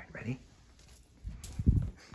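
A Siamese cat gives a short meow that falls in pitch. About a second later comes a deep thumping rumble of handling noise as the handheld phone is carried along.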